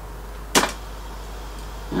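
A single sharp mechanical click about half a second in as the reel-to-reel tape deck's play control is pressed, over a steady low hum.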